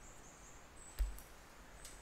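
A pause with only faint background ambience, broken by a single soft knock about a second in.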